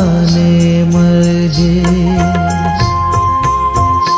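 Gujarati Jain devotional song (bhajan) moving into an instrumental interlude. One long note is held through the first half, then a higher instrumental melody enters, over a steady percussion beat.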